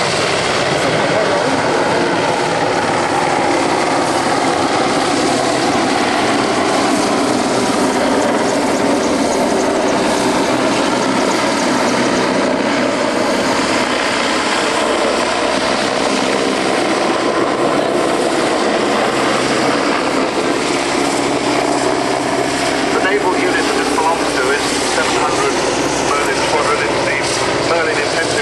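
Royal Navy Merlin HM1 helicopter flying close by: a loud, steady noise of its three turboshaft engines and rotors.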